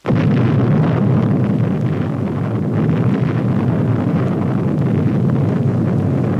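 Explosion sound effect: a sudden blast that carries on as a steady, heavy low rumble.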